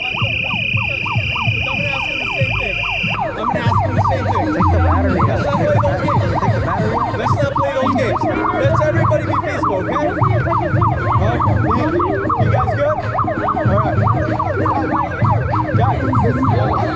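Electronic siren sounding a fast up-and-down warble without a break. A steady high-pitched tone sounds over it for the first three seconds, then stops.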